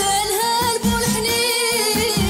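A woman singing a Moroccan song, holding a long wavering note over instrumental accompaniment with a steady low beat.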